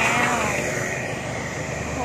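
A truck engine running steadily, with a woman's voice ending about half a second in.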